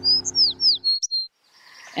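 Small songbird chirping: a quick run of about six short, high whistled notes, several sliding downward, over background music that stops about a second in.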